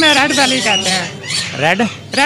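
Parrots squawking and calling in a run of harsh, wavering cries with a rising call near the end.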